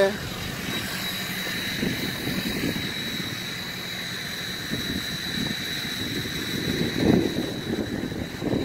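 Supercharged LSA V8 idling as a steady hum with a thin, even high whine, under irregular rustle and buffeting on the phone's microphone.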